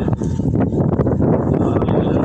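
Wind buffeting the camera's microphone: a loud, continuous low rumble with little high-pitched content.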